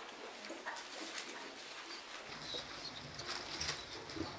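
Faint rustling of Bible pages as a congregation turns to a passage, with a few soft paper crackles in the second half.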